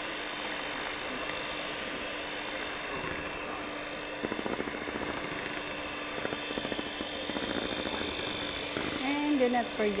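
Electric hand mixer running steadily, its beaters whirring through chiffon cake batter in a metal bowl, with two short stretches of louder rattling in the middle. A voice starts in near the end.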